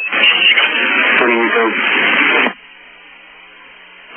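A voice over a narrow-band air-to-ground radio link, talking for about two and a half seconds, then the open channel's low steady hiss and hum.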